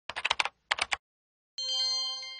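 Computer keyboard typing sound effect: two quick runs of keystrokes, then a bright bell-like chime rings out near the end and slowly fades.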